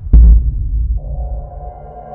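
Logo-intro sound design: a deep booming hit just after the start that fades away. About a second in, a steady low drone with held tones above it comes in.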